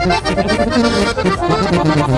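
Norteño corrido music: accordion leading over a pulsing bass line in an instrumental break between sung verses.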